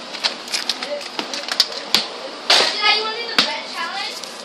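Handling noise from fingers on the tablet that is recording: a quick run of sharp clicks and taps, then a brief high child's voice a little after halfway, and another click.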